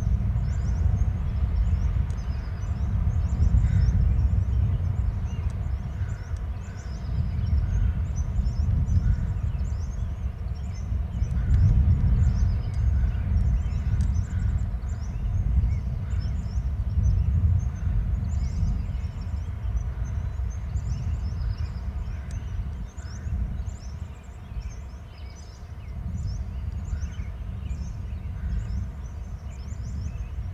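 Wind buffeting the microphone in a low rumble that swells and eases, with many faint, short, high chirps throughout.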